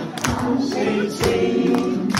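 A group of people singing a song together, with hand claps in time with the beat.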